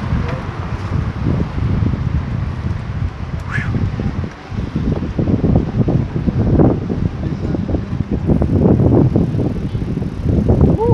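Wind buffeting the microphone of a handheld camera as its holder rides a bicycle, heard as a loud, uneven low rumble. There is a brief rising chirp about three and a half seconds in.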